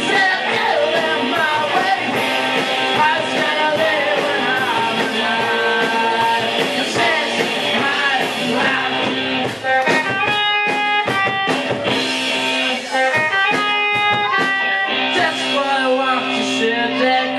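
Rock band playing live, mostly instrumental, led by guitar, with a couple of brief breaks in the middle.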